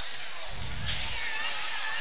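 Live basketball game sound picked up by the broadcast microphone between commentary: a ball being dribbled under a steady haze of gym and crowd noise.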